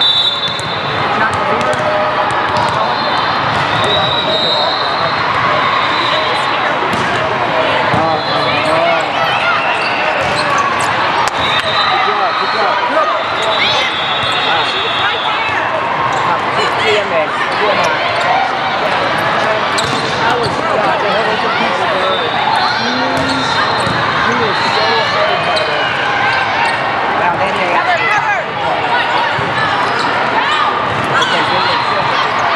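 Volleyball being played in a gym: a steady din of many indistinct voices from players and onlookers, with sharp slaps of the ball on serves and passes and short high squeaks of sneakers on the court.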